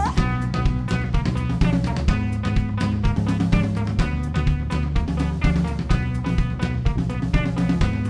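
Live band playing an instrumental passage: a drum kit keeps a steady, busy beat of kick, snare and cymbal strokes under an electric bass line and a semi-hollow electric guitar.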